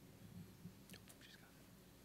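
Near silence: low room hum, with a brief faint whisper about a second in.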